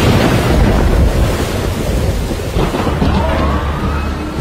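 Thunderstorm sound effect: a loud, steady rush of rain with deep thunder rumble, and a faint rising tone entering near the end.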